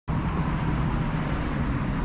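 Steady low outdoor rumble of wind on the microphone and distant road traffic.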